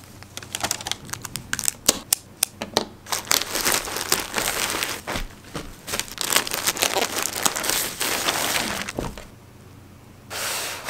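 Packaging crinkling and rustling in irregular sharp crackles as hands unwrap and handle scrunchies and hair accessories, easing off about a second before the end.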